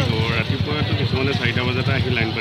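Motorcycle engines running with a rapid low pulse under men's voices.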